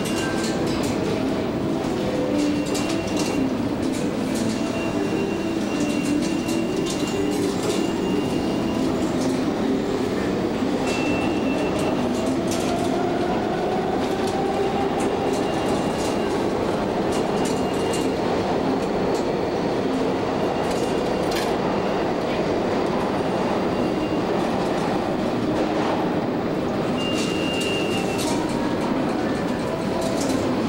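Subway train noise in a station: a train running with scattered clacks and brief high wheel squeals. A motor tone rises in pitch around the middle.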